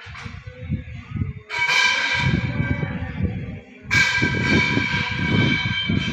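A large bell struck twice, about two and a half seconds apart, each stroke ringing on and slowly dying away, over a low rumbling.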